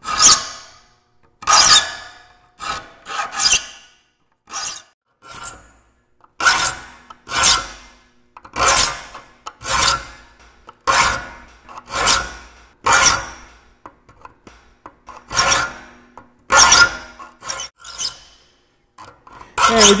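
Saw file rasping across the steel teeth of a hand saw, about one stroke a second with short pauses between groups of strokes. Each stroke is a bright metallic rasp that fades quickly. The teeth are being shaped to a set rake and fleam angle.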